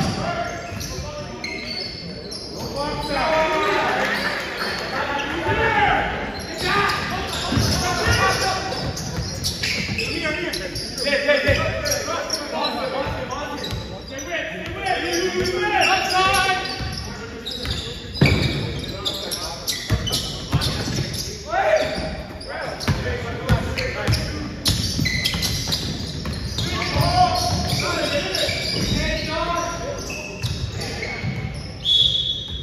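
Basketball game sounds in a large gymnasium: the ball bouncing on the hardwood floor, amid the voices of players and spectators calling out.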